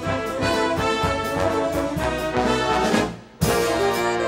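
Jazz big band playing, its trombones, trumpets and saxophones sounding sustained chords together. A little after three seconds in the band drops out briefly, then comes back in together with a sudden loud hit.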